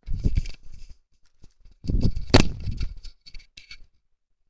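Close handling noise: rustling, scraping and knocking as hands fumble with things right by the microphone, in two bursts, the louder one about two seconds in, followed by a few light clicks.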